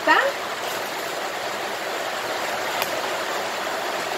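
A steady, even rushing noise in the background, with one faint click about three seconds in.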